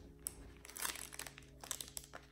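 Soft, irregular crinkling of the plastic wrapper on a pack of sour straws candy as it is handled, with a few sharper crackles.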